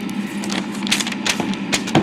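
A sheet of notepad paper rustling and crackling in a series of short, crisp crackles as it is handled and lifted off the pad.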